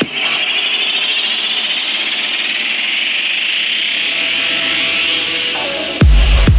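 Techno track in a breakdown: the kick drum drops out and a high synth riser climbs slowly in pitch over a steady hiss, easing back down slightly near the end.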